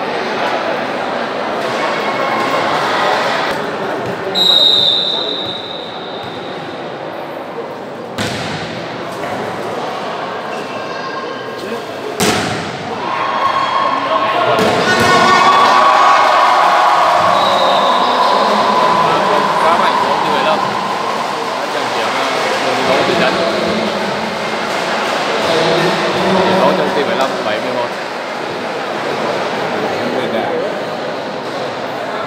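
Volleyball rally in a sports hall: a referee's whistle about four seconds in, two sharp ball strikes, then the crowd's voices swelling into cheering, with a second, shorter whistle partway through. Spectators' chatter runs throughout.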